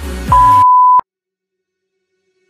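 Electronic dance-pop music is cut off by a loud, steady, high beep, a bleep sound effect lasting under a second. The beep stops abruptly with a click about a second in, leaving dead silence.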